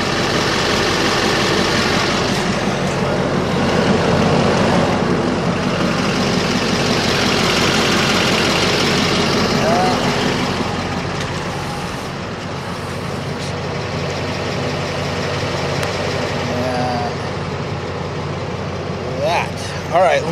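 A large vehicle's engine idling steadily, a constant rumble and hiss that eases slightly about halfway through.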